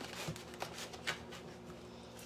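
Faint knife cuts and scrapes through charred mild peppers on paper towels: a few soft, scattered clicks.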